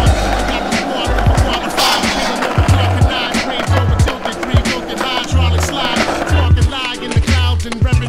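Skateboard wheels rolling on rough pavement, with a sharp board clack about two seconds in, under a hip hop track with a heavy bass beat.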